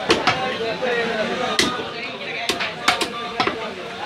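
Butcher's cleaver chopping goat meat and rib bone on a wooden log chopping block: about seven sharp chops at uneven intervals, two close together at the start and a quick cluster near the end, over background market chatter.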